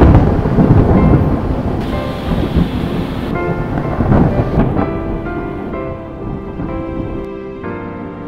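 Thunder-and-rain sound effect with heavy rumbles at the start and again about four seconds in, fading away as background music with sustained notes comes forward toward the end.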